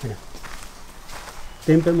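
Faint footsteps of someone walking, a few steps about half a second apart, followed by a voice starting to speak near the end.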